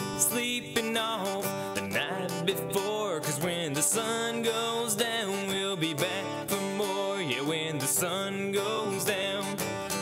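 Solo acoustic country song: a man singing while strumming an acoustic guitar.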